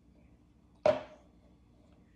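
A single sharp knock about a second in, dying away quickly, over quiet room tone.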